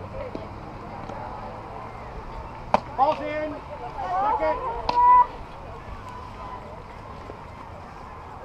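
A single sharp crack of a softball impact nearly three seconds in, followed by young players shouting calls on the field for about two seconds, with a second sharp pop about five seconds in.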